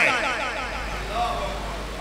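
A man's voice through a public-address system, trailing away in the PA's echo and fading over the two seconds, over a steady low electrical hum.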